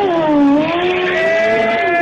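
Sport motorcycle engine revving. The pitch dips early on, then climbs and is held high near the end.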